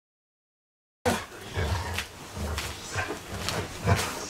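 Silence, then about a second in a dog starts growling in short, repeated bursts as it play-wrestles with a person.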